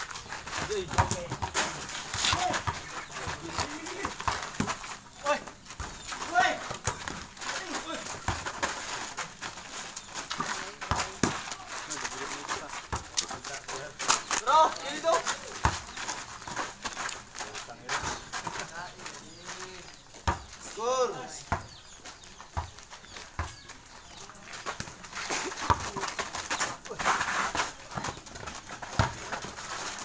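Players shouting and calling out during a pickup basketball game, over scattered thuds of the ball bouncing and feet on a packed-dirt court. The loudest calls come about halfway through and again a few seconds later.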